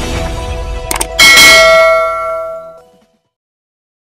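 Intro jingle whose music gives way about a second in to a loud, struck bell-like chime that rings out and fades away over about two seconds.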